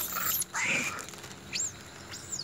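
Long-tailed macaques giving brief high-pitched squeaks: one at the start and a short chirp about one and a half seconds in.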